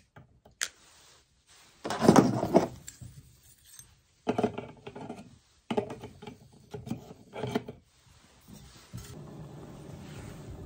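Stainless steel stove-stand plates and a stainless bush pot clinking and scraping in several short bursts as they are handled and set up over an alcohol stove. A steady rushing noise begins near the end.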